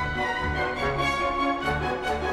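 Orchestral music with strings, playing dance music over a regular pulsing bass beat, with a couple of light clicks near the end.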